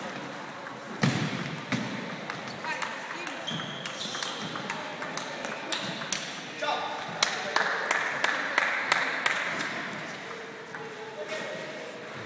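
Table tennis ball clicking off bats and table again and again during a rally, with short pauses between strokes.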